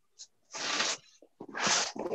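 A person breathing hard close to a video-call microphone: three noisy breaths about a second apart.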